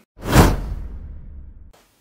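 Whoosh transition sound effect: a single sudden swoosh with a low tail that fades away and then stops abruptly.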